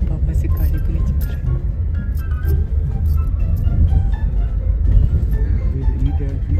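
Steady low rumble of a car being driven, heard inside the cabin, with music and a voice over it.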